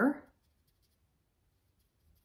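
The tail of a spoken word, then near silence: room tone.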